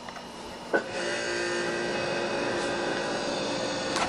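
A click, then a steady machine hum with several fixed tones, like a small motor or fan running.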